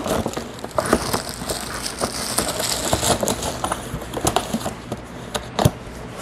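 Packaging being handled: paper and plastic wrapping rustling and crinkling, with scattered small clicks and knocks from a boxed shock absorber and a bag of hardware.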